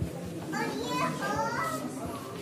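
Children's voices talking and calling out, high and rising and falling, with a murmur of other people behind them.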